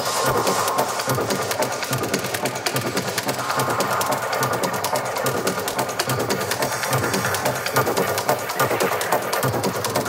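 Detroit techno track with a steady driving beat and fast ticking hi-hats; a brighter synth layer swells in about three and a half seconds in and fades near the end.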